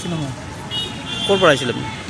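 A high-pitched vehicle horn sounds steadily in street traffic for about a second, starting just under a second in.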